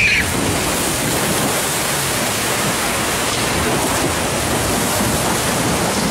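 Steady rushing noise of a log flume ride, water in the channel and air streaming past the boat.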